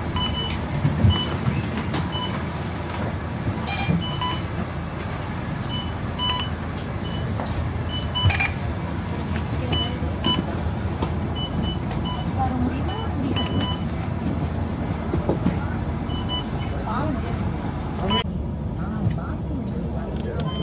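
Crowd chatter over the low running of a bus engine, with short high electronic beeps recurring about once a second from the farecard readers as passengers tap their cards on boarding.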